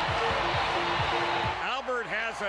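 Ballpark crowd noise under stadium music with a steady thumping beat, about three to four beats a second, and a few held notes. About one and a half seconds in it cuts to a man's commentary voice.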